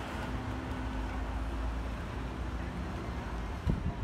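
Street traffic: a steady low rumble with a faint engine hum, and a couple of short knocks near the end.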